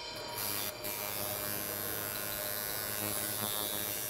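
Electric tattoo machine running with a steady buzz.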